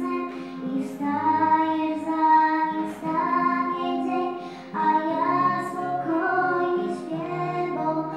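Children's voices singing a church hymn with instrumental accompaniment, held notes moving from pitch to pitch over a steady low bass line.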